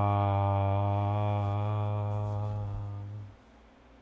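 A man's voice holding one long, low chanted tone at a steady pitch, slowly getting quieter, then stopping about three seconds in.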